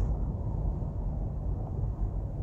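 Steady low rumble of a moving car, tyre and engine noise heard from inside the cabin, with no distinct events.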